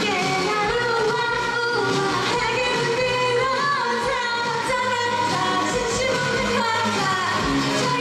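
K-pop dance track with a steady beat, with female voices singing over it.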